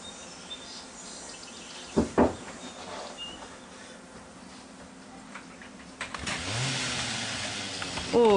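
Steady background hiss with two sharp knocks about two seconds in; near the end a motor starts up, its hum rising and then running steadily.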